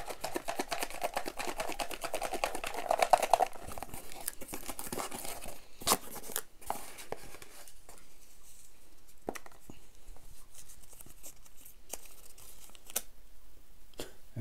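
Paper slips rattling inside a small cardboard box shaken rapidly for about three seconds. After that come scattered cardboard clicks and paper rustling as the box is opened and a hand rummages in and pulls out one slip.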